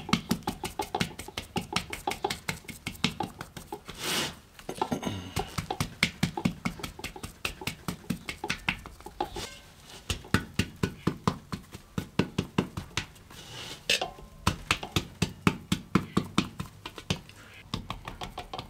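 A rounded stone tapping a sheet of damp clay draped over an upturned fired pot, a steady run of short taps about four a second as the clay is hammered out thin.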